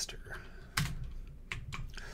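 Computer keyboard keys struck a few times: separate, sharp clicks.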